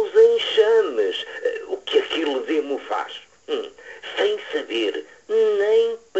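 Speech only: a voice talking in phrases with short pauses, with the sound of a radio broadcast.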